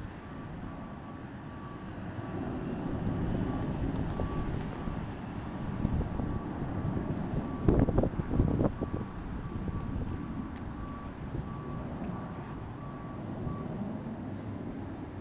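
Distant jet roar from Blue Angels jets in a formation climb and loop, swelling a couple of seconds in. There are a few heavy gusts of wind on the microphone about eight seconds in. A faint, evenly repeating electronic beep, like a vehicle's reversing alarm, sounds throughout.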